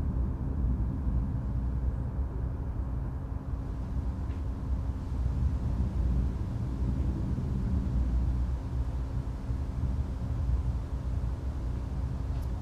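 Steady low rumble of New Shepard's BE-3 hydrogen-oxygen rocket engine firing during ascent, with a faint steady hum under it.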